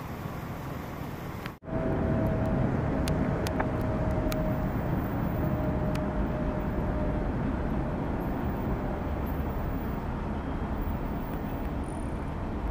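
Street ambience at night, a steady low rumble of idling vehicles and city noise. It drops out briefly at a cut about one and a half seconds in and returns louder, with a faint steady tone for several seconds after.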